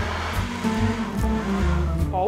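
Countertop blender running, puréeing cooked cauliflower into a creamy soup, under steady background music. The motor noise fades out near the end.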